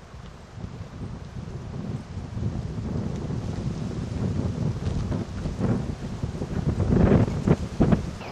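Wind buffeting the microphone: a low rumble that builds about half a second in and gusts hardest near the end.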